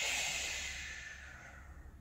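A long, forceful breath blown out through pursed lips, a breathy hiss that fades away over about two seconds: the out-breath of a breathing exercise.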